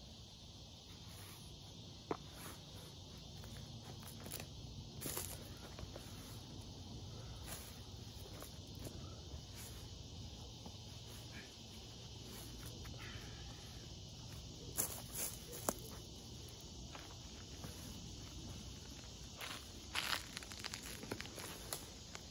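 Fabric of a synthetic sleeping bag rustling in short, scattered spells as it is smoothed, folded and rolled up by hand on a foam sleeping pad, the most noticeable rustles about a third of the way in and again near the end. Underneath is a steady faint drone of insects.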